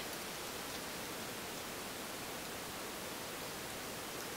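Steady, even hiss with nothing else in it: a recording's background noise floor.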